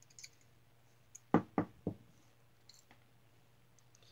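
Three sharp knocks about a quarter second apart, then a lighter tick, as small metal parts and a nut driver are set down on a cloth-covered table.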